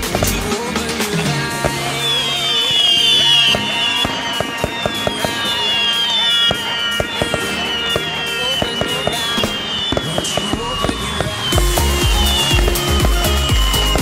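Fireworks going off with many sharp bangs and crackles over loud electronic dance music. A high falling note repeats a little more than once a second from about two seconds in. The music's bass drops out about half a second in and comes back about eleven and a half seconds in.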